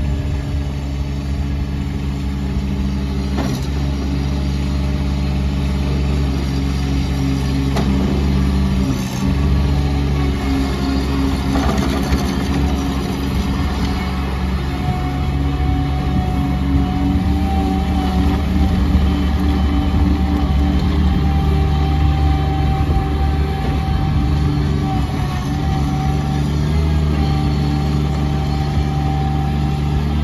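Bobcat MT85 mini track loader's 24.8 HP Kubota diesel engine running steadily while the machine drives and turns on its rubber tracks, the engine note shifting several times with load. A thin steady whine joins in about halfway through.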